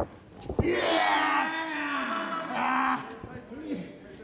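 A sharp smack about half a second in, then a man's long, drawn-out yell, falling in pitch, with a shorter shout near the end.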